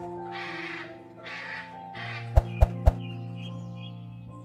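Soft background music with sustained tones, over which a hyacinth macaw gives two harsh squawks in the first two seconds. A little past halfway come three sharp clicks in quick succession, the loudest sounds here.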